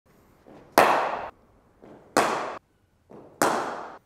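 Cricket bat striking the ball three times about 1.3 s apart. Each hit is a sharp crack that rings on briefly in the indoor net, and each comes a moment after a much softer knock.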